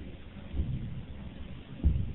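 Low rumbling room noise in a large hall, with two dull thumps, one about half a second in and a louder one near the end.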